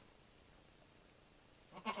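Near silence: faint room tone, until a voice starts speaking near the end.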